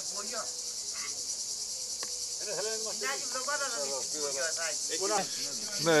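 Cicadas chirring steadily, a continuous high-pitched drone. From about two and a half seconds in, men's voices talk under it in the background.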